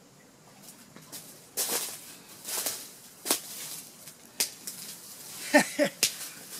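A largemouth bass is hauled in by hand on a fishing line and landed: a handful of short, sharp splashing and rustling noises spaced about a second apart as the fish comes out of the water and onto dry leaves. Near the end comes a man's short exclamation, the loudest sound.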